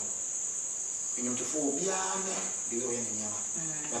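A steady, unbroken high-pitched insect trill, like crickets, under quiet talk.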